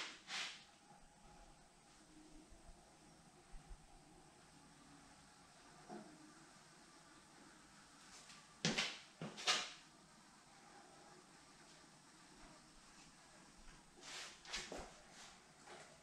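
Mostly quiet room tone broken by a few brief, hissy handling noises: two short ones about a second apart near the middle, and a small cluster near the end.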